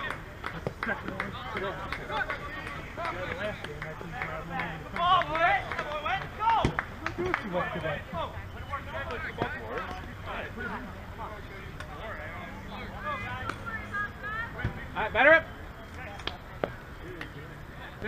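Voices of players and coaches calling out across an open softball field, scattered and mostly distant, with a louder shout about fifteen seconds in.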